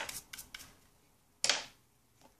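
A toothbrush scrubbing the probe end of a Hanna HI-98129 combo pH/EC pen, a few quick brush strokes in the first half second. About one and a half seconds in comes a single sharp knock, the loudest sound, as something is set down.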